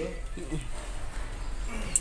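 Indistinct low voices, with a sharp click just before the end.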